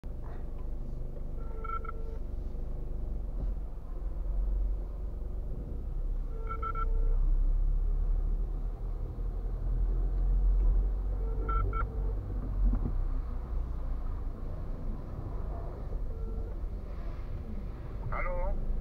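Car driving slowly through an underground car park, its engine and tyres making a steady low rumble. A short phone ring tone repeats about every five seconds over it, a call ringing before it is answered.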